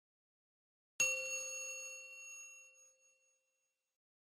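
A single bell-like chime struck once about a second in, its ringing tone fading away over about two seconds.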